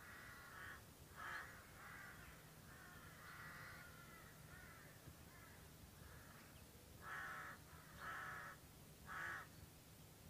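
Faint cawing of a crow: a string of short, harsh calls, with three louder caws about a second apart near the end, over a faint steady low hum.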